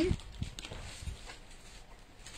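Clothes and their plastic packaging being handled on a table: a few soft knocks in the first second, then light rustling.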